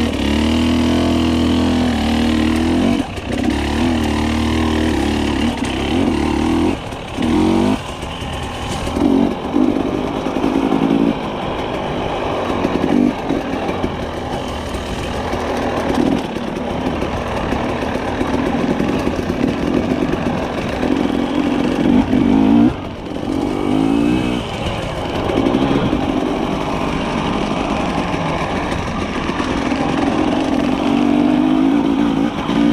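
Husqvarna TE300i two-stroke enduro engine under way on a dirt trail, its revs rising and falling with the throttle and dropping briefly several times as the throttle is rolled off.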